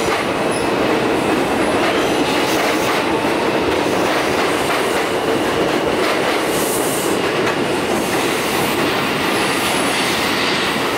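Bombardier R142 subway train pulling out of an elevated station: a loud, steady rumble of steel wheels on the rails as the cars run past and away.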